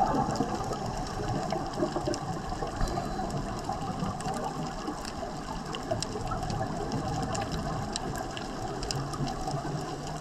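Underwater noise heard through a camera housing: a steady rush of water with scattered faint clicks.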